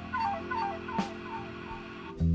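Live band playing an instrumental passage between vocal lines: a lead instrument plays a short falling phrase about four times over held chords, with one sharp drum or cymbal hit about halfway through.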